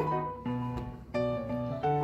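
Soft instrumental background music: a few held notes, one after another.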